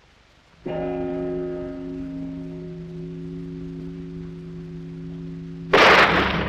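A clock bell strikes once just under a second in, its tone ringing on and slowly dying away. Near the end a starter's pistol fires with a sudden loud crack.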